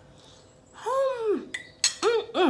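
A woman's closed-mouth "mm" hum while tasting a mouthful of food, rising and then falling in pitch for about half a second, followed near the end by a sharp click.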